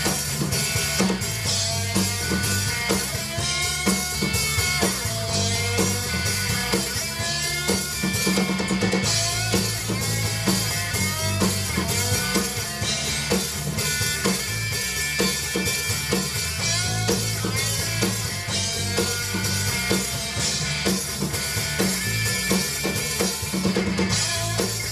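Live rock band playing an instrumental passage: drum kit, bass guitar and electric guitar, with no singing.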